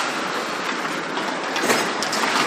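Ice hockey play on the rink: a steady hiss of skate blades scraping and carving the ice, with a couple of sharp clacks, one as it begins and one near the end.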